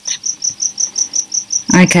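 High-pitched chirping, repeating steadily about four times a second, of the insect kind a cricket makes. A woman's voice starts near the end.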